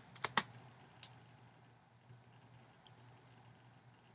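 Clicks from working a computer's keyboard and mouse: a quick run of three or four sharp clicks at the start and a single click about a second in. After that, only a faint steady low hum.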